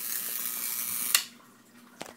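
A steady high hiss that stops abruptly with a single sharp click about a second in, leaving only a faint low hum.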